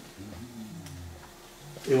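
A man's low, quiet voice sound, drawn out for about a second and a half in a pause between sentences.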